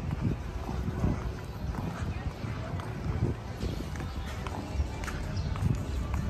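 Outdoor walking ambience: irregular low rumble and soft thumps of footsteps and wind on the phone microphone, with indistinct background voices.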